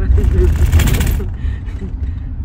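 Low road rumble inside a moving car, with a brief laugh at the start and a loud rasping, rattling noise lasting about a second.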